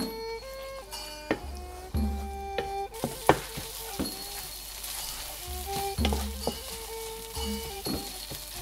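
Red curry paste sizzling in oil in a nonstick pan, stirred with a wooden spatula that scrapes and knocks against the pan now and then; the sizzle comes up about three seconds in. Background music plays throughout.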